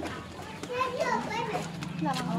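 Children's voices talking and calling out, heard from about half a second in to a second and a half.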